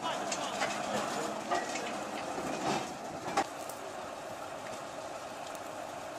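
T-330 crawler bulldozer running as it climbs steel ramps onto a rail flatcar: steady machinery noise with a few short metallic clicks in the first half.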